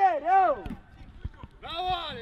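Raised voices of players calling out on the pitch, a short shout at the start and another near the end, with a few faint knocks of play in the quieter stretch between.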